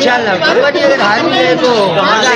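A man talking close to a handheld microphone, with other people's voices chattering behind him.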